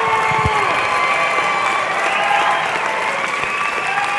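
Audience applauding steadily, with some cheering over the clapping.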